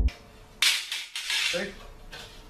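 A sudden hissy clatter of thin sheet metal being handled, a bent galvanized duct piece rattling for about a second, followed by the start of a man's voice.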